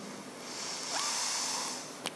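A soft, breathy hiss, like a long exhale, that swells about half a second in and fades near the end.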